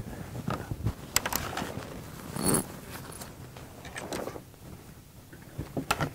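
Rustling and handling noises as a spare pair of socks is fetched. There are scattered clicks and a brief, louder scratchy burst about two and a half seconds in.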